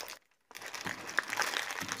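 Crinkling of the wrapper around a brick of Roma Plastilina clay as hands turn it over and open it, starting about half a second in.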